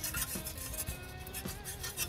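A metal fire tool scraping and raking through burning wood coals inside a steel offset-smoker firebox, in a few short scrapes and knocks.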